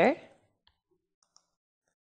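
The end of a spoken word, then a few faint, short clicks of a computer keyboard and mouse as a search is typed and run.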